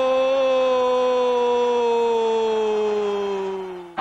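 A TV football commentator's long drawn-out goal cry, 'Goooool', held on one note that slowly falls in pitch and fades out near the end.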